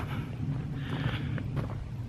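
Steady low rumble of wind on the microphone, with faint outdoor noise.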